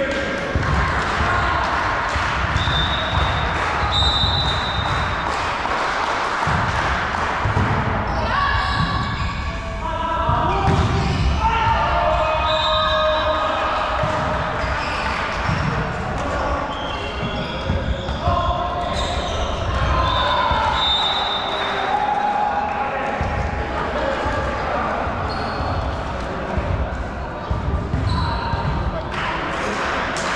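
Indoor volleyball play in a large, echoing sports hall: thuds of the ball and players' feet, with players' voices calling out, loudest around the middle, and a few short high squeaks.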